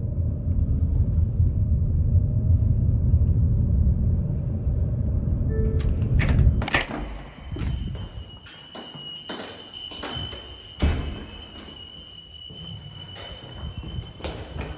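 Steady low rumble, like the ride inside a moving vehicle, for about the first seven seconds. Then, after a sharp click, a string of knocks, thuds and rustles from a door being handled and someone moving about in a hurry, with a faint steady high tone behind them.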